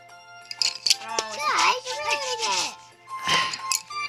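A child's voice making sliding, wordless vocal sounds over background music.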